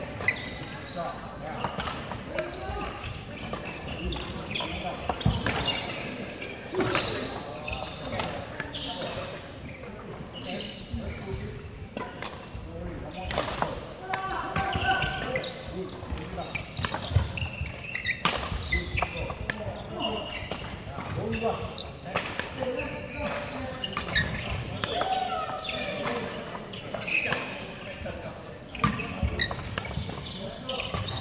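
Badminton drill: shuttlecocks are struck with rackets in sharp hits every second or two, mixed with footsteps thudding on a wooden court floor.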